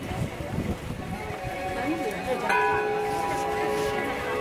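A metal temple bell struck once about halfway through, its several tones ringing on steadily, over a murmur of voices.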